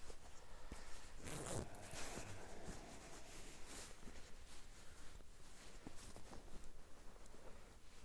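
Faint rustling of clothing and small handling clicks as an ice angler moves his hands, with a louder rustle about a second in and another near four seconds.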